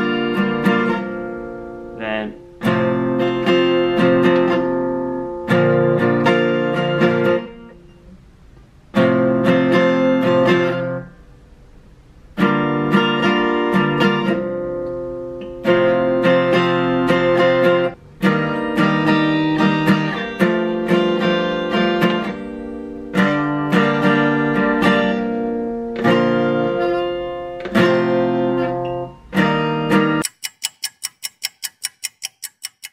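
Acoustic guitar with a capo, strummed in runs of chords that ring and die away, broken by short pauses where the playing stops and starts again. It is a learner working through a song's verse and chorus chord progressions.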